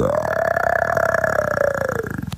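A beatboxer holding one long, rough, buzzing bass note made with the voice and mouth. Its pitch rises at the start and sags slightly near the end.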